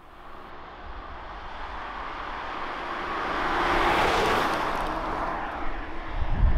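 Genesis G80 Sport with its 3.5-litre twin-turbo V6 driving past, its tyre and engine noise swelling to a peak about four seconds in and then fading as it moves away.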